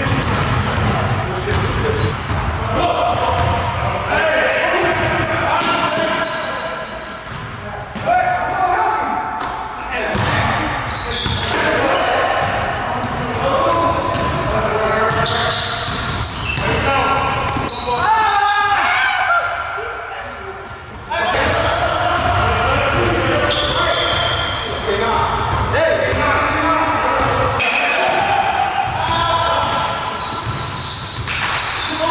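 Basketball bouncing on the wooden floor of a gym during a pickup game, with the players' voices in the large hall throughout.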